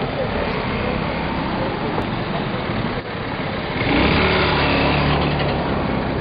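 Street ambience: traffic noise with bystanders' voices in the background, and a vehicle engine growing louder about four seconds in.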